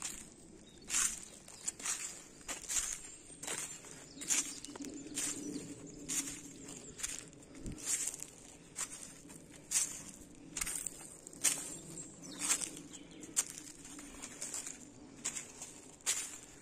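Footsteps on dry fallen leaves and twigs, a steady walking pace of about one step a second.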